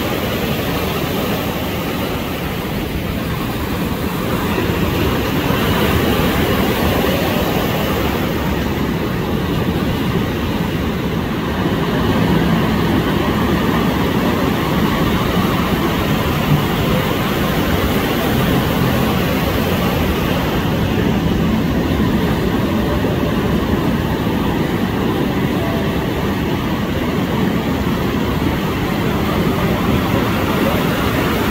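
Ocean surf breaking and churning around pier pilings: a loud, steady rumble with no distinct single crashes.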